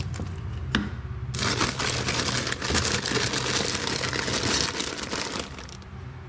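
Thin plastic bag crinkling and rustling for about four seconds as cotton balls are pulled out of it, after a couple of light knocks near the start.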